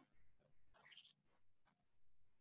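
Near silence: room tone, with one faint short high squeak that rises in pitch about a second in.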